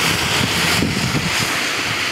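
Steady rush of the Nišava river in flood, running fast and nearly up to the top of its banks, mixed with wind buffeting the microphone.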